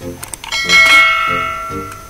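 A bright bell chime rings once about half a second in and fades over about a second and a half. It is the notification-bell sound effect of a YouTube subscribe-button animation, over soft background music.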